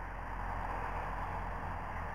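Steady background noise with no distinct events.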